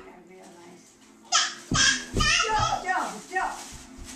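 A young child's high voice calling out in several bursts, starting a little over a second in, over faint steady background music.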